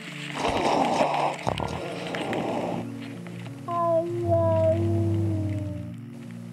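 Leaves and twigs brushing and rustling against a cat's collar camera as the cat pushes through a shrub, for the first few seconds. Then soft background music with long held notes.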